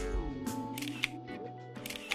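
A DSLR camera shutter clicking a couple of times over steady background music.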